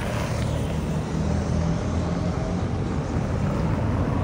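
Road traffic on a city street: a steady low rumble of passing cars.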